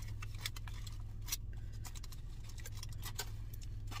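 Aluminium foil wrapper crinkling in irregular small crackles as it is unfolded from around soft tacos, over a steady low hum.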